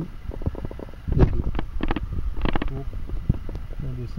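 Hand tools working on the bolt at the front of a rear differential: a run of sharp metallic clicks and knocks in short clusters, the heaviest knock about a second in.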